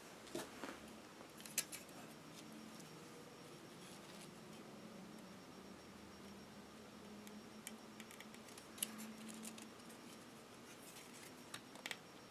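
Faint handling noise: a few small clicks and light rubbing as fingers push a small plastic video-cable connector into its socket on a drone frame.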